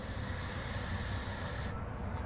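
Steady hiss of compressed air escaping from the air-ride driver's seat's valve as its side control is worked, cutting off suddenly near the end.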